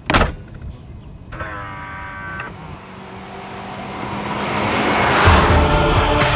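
A single sharp thump as the car's boot lid is shut, then music with a whoosh that swells steadily louder toward the end.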